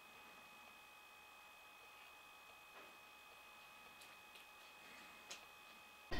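Near silence: faint room tone with a thin steady high hum and a few faint ticks in the second half.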